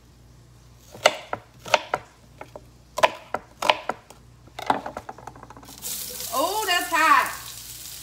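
Five sharp knocks on a wooden cutting board as onion chunks are handled. About six seconds in, onion chunks go into hot oil in a cast-iron skillet and sizzle loudly.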